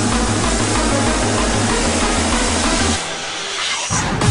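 Happy hardcore electronic dance music with a pulsing bass pattern under a dense, bright synth layer. About three seconds in the bass drops out, leaving a rush of hiss-like noise as a build into the next section.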